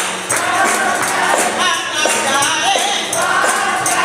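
A small gospel group singing with a woman leading on a microphone, a tambourine jingling along to the beat.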